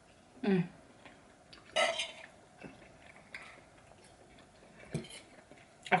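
Quiet eating at a table: a short hummed 'mm' of enjoyment near the start, then a few faint clicks of a metal fork on a ceramic plate, with one louder, brief clink or clatter about two seconds in.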